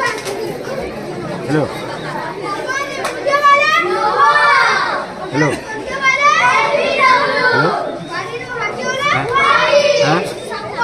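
Several children's voices shouting and talking over one another, with high calls that rise and fall, loudest in the middle and near the end.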